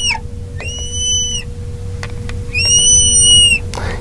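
Marker squeaking on a glass lightboard as the lines of a triangle are drawn: a squeak ending just at the start, then two long, high, steady squeaks, one about half a second in and one lasting about a second near the end.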